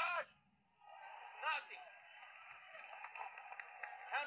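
A man's voice gives two short, loud shouts, one right at the start and another about a second and a half in, over the steady background din of a boxing arena.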